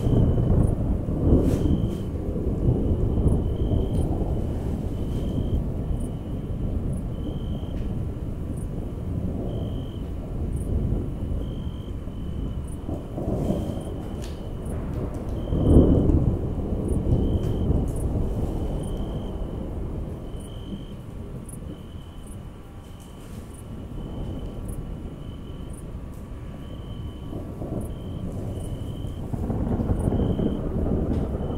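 Rumbling thunder, played as a stage sound effect, rolling in swells with the loudest roll about sixteen seconds in. A faint high chirp repeats about once a second underneath.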